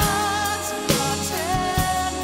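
Drum kit played along to a recorded song with a sung vocal: a few sharp drum strikes, the strongest about a second in and another near the end, over a gliding sung melody and a sustained backing.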